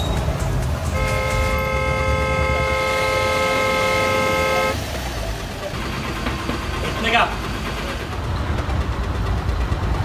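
A car horn sounds in one long steady blast of about four seconds, starting about a second in, over a low engine rumble.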